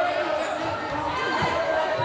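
Voices and chatter in a gymnasium, with a basketball bouncing a few times on the hardwood court.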